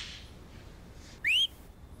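A person whistles once: a short, rising whistle about a second in.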